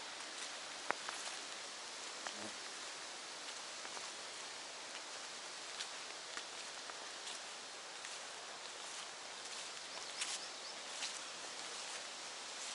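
Outdoor ambience in a summer birch wood: a steady hiss with scattered faint rustles and ticks, and one sharper click about a second in.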